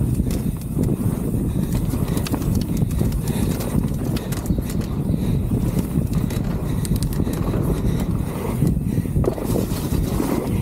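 Mountain bike ridden fast on a dirt trail, heard from a camera on the rider: a steady low rush of wind and tyre noise on the microphone, with the frequent clicking and clattering of the bike rattling over the bumps.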